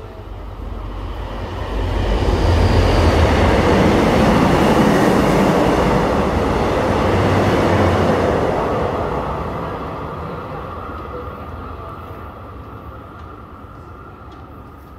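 A train running past the platform on the rail tracks behind the screen doors, a loud rumble with rail noise. It builds over about two seconds, peaks for several seconds, then fades away.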